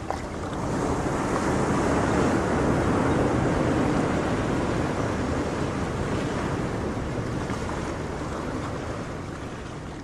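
Ocean surf: a single wave rushing in, building over the first couple of seconds and then slowly washing back out, fading toward the end.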